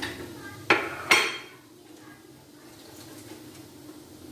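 Two sharp clinks of metal kitchenware, under half a second apart, the second ringing on briefly, over a steady low hum.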